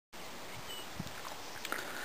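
Quiet outdoor ambience: a faint steady hiss with a couple of soft clicks.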